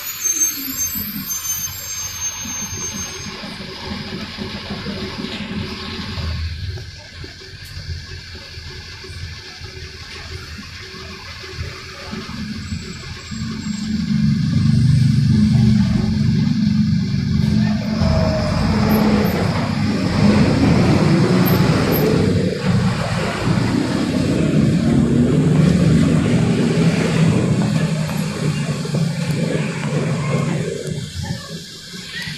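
Mercedes-Benz 1570 city bus heard from inside the passenger cabin: engine and road rumble, fairly quiet for the first dozen seconds, then much louder from about halfway as the engine works harder, with its pitch rising and falling.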